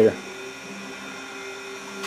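A small motor or similar machine running with a steady hum made of a few fixed tones, with no change in speed.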